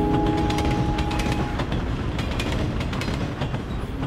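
Passenger train running along the track, heard from inside a carriage: a steady rumble with scattered clicks from the wheels that slowly gets quieter. The last held notes of a guitar intro tune fade out about a second and a half in.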